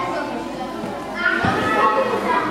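Many children chattering and calling out together in a large hall, a busy jumble of young voices that grows louder about a second and a half in.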